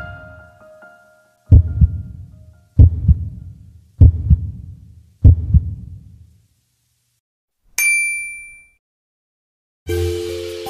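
Background music fades out, then four low, deep hits sound about a second and a quarter apart, each dying away. Near the end comes a single bright bell-like ding that rings for about a second.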